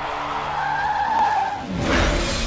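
Film-trailer sound effect: a sustained high screech over a low steady rumble, then a sudden rush of sound near the end.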